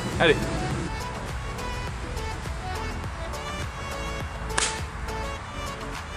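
Background music, with one sharp crack about four and a half seconds in: a golf club striking the ball from the tee.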